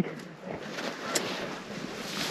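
Wind rushing over the microphone, a steady hiss, with one brief sharp tick about a second in.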